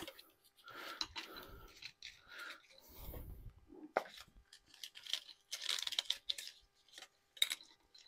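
Faint, irregular plastic clicks, scrapes and crinkling as an engine wiring harness and its clip-on connectors are worked loose by hand. There is a longer rustle about two-thirds of the way through.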